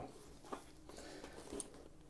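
Faint handling noise of a modular motorcycle helmet being turned over in the hands, with one short click about half a second in.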